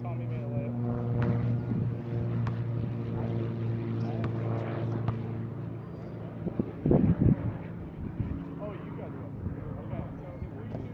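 A steady engine drone holds one even pitch and fades after about six seconds. Voices are heard with it, and there are a few short loud sounds about seven seconds in.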